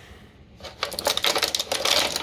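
Clear plastic packaging crinkling and crackling as it is handled: a quick, dense run of small crackles that starts about half a second in.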